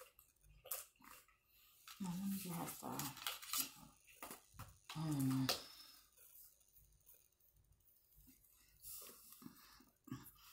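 Two brief hummed voice sounds, about two and five seconds in, amid light clicks and rustles of handling.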